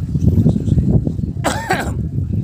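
Wind buffeting the microphone in a choppy low rumble, with a short burst of a person's voice, like a cough, near the end.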